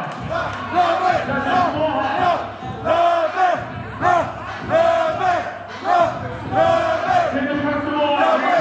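Loud crowd of voices shouting and cheering, with a man calling out over a microphone.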